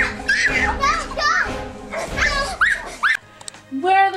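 Children screaming in a run of short, high-pitched shrieks. About three seconds in, the sound changes abruptly to a lower, held pitched tone.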